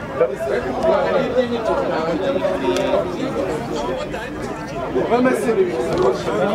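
Several people talking at once: overlapping chatter with no single clear voice.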